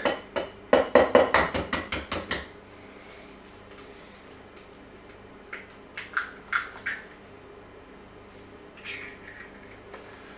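Metal whisk clinking quickly against a glass mixing bowl for about two seconds, then a few softer taps and clinks.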